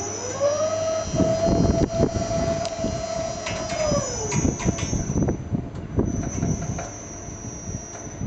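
Lure-drive motor of a cheetah run spinning up with a rising whine, holding one pitch for about three seconds and winding down about four seconds in, as it pulls the lure cable over the overhead pulley. A thin high whine runs over it, and irregular low rumbling knocks go on throughout.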